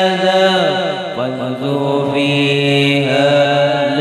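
Male voices chanting an Arabic devotional syair in a melismatic line. The melody falls in pitch about a second in, holds a long note, then rises again near the end.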